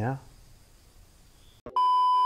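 After a quiet pause, a click and then a steady, loud single-pitched beep starts near the end: the reference tone of a TV colour-bars test pattern, used as an editing transition.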